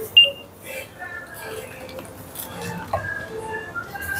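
A checkout barcode scanner gives one short, high beep as an item is scanned, with shop chatter in the background.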